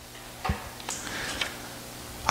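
A pause in speech: a faint steady low hum with a few small clicks, the clearest about half a second in.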